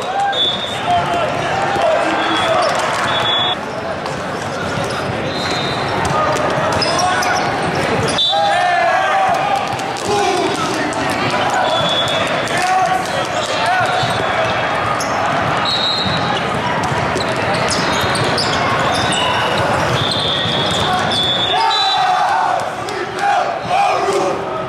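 Busy volleyball hall din: many voices of players and spectators from several courts, with volleyballs being hit and bouncing and short high sneaker squeaks on the courts, all echoing in a large hall.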